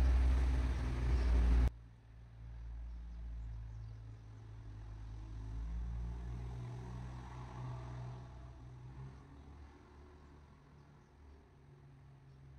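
Low background rumble, loud for the first second and a half, then cutting off abruptly to a faint, steady low hum.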